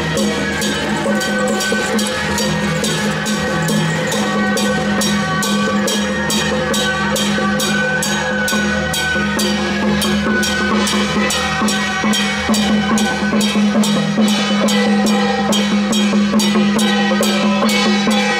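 Traditional temple-procession percussion: drums and gongs beating a steady rhythm of about three strokes a second, with sustained pitched tones running over the beat.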